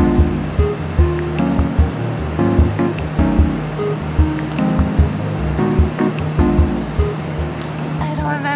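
Background music with a steady beat: low kick thumps and regular hi-hat ticks over chords and a sustained bass note.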